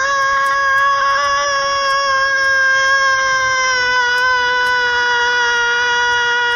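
A man's long, loud yell held on a single pitch without a break, sinking slightly in pitch as it goes.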